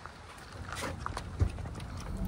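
Someone getting into a pickup truck's cab through its open door: a few light clicks and knocks, and a dull thump about one and a half seconds in.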